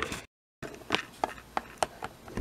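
A hard plastic Littlest Pet Shop figurine being tapped along a tabletop: four or so light clicks in the second second, over faint room tone. A brief gap of dead silence comes shortly after the start.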